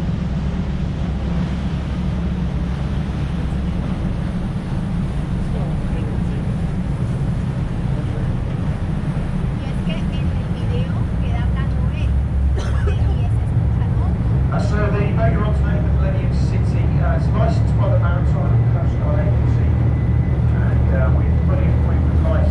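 Steady low rumble of a river cruise boat's engine, growing louder about halfway through as the boat gets under way, with people talking over it.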